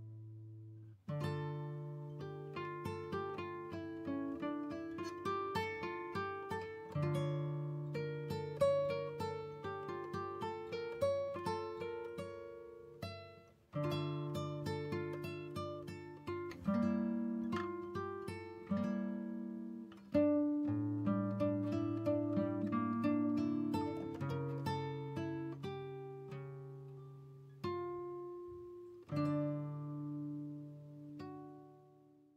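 Instrumental music: runs of quick notes, each struck sharply and fading, over lower sustained bass notes, in phrases with short breaks between them.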